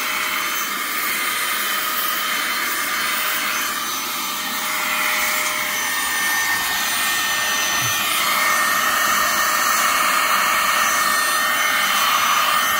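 Opolar cordless electric air duster running in blower mode through its narrow nozzle: a steady rush of air over a high motor whine, a little louder in the last few seconds.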